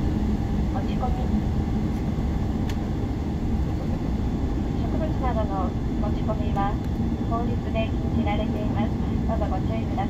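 Airliner cabin noise while taxiing after landing: a steady low rumble from the engines and the rolling aircraft, with a faint steady hum. Voices talking join from about halfway through.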